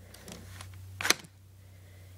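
Lego plastic parts of a brick-built toy gun clicking as it is handled: a few faint clicks, then one sharp click about a second in.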